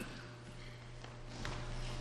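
Quiet room between pieces: faint shuffling and footsteps on a wooden gym floor over a steady low hum.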